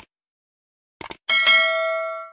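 Subscribe-button sound effect: a click, a quick double click about a second in, then a notification bell ding with several clear ringing tones that fades away.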